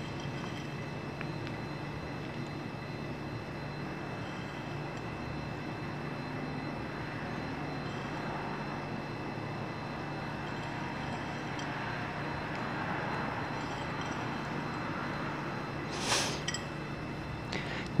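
Steady background hum, like a running appliance, with faint constant whining tones, and a brief noise about sixteen seconds in.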